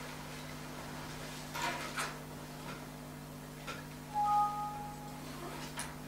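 Meeting-room background with a steady low electrical hum and a few soft knocks or rustles, then a short electronic beep about four seconds in, the loudest sound here.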